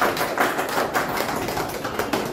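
Live room sound: a rapid, irregular run of small taps and knocks over a steady hiss.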